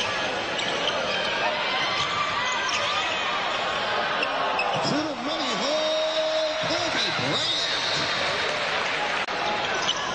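Live basketball game sound: steady arena crowd noise with a ball bouncing on the hardwood court. A voice calls out over the crowd in the middle.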